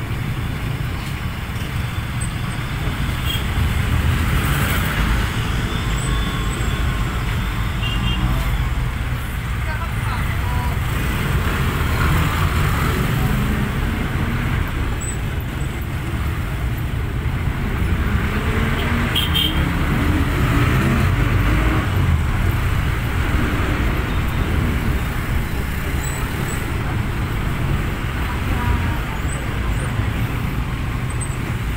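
Road noise inside a moving passenger vehicle: a steady low engine and tyre rumble, with muffled voices at times.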